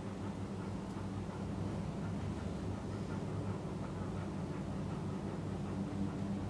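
A steady low hum, even throughout, with no other distinct sound.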